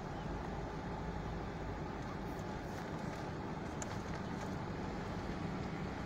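Steady low rumble of vehicle noise with no distinct events.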